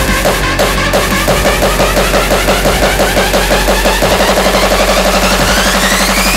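Hardcore electronic dance music in a build-up: a fast repeated synth stab that quickens into a roll over a steady low bass, with a rising sweep in the last two seconds.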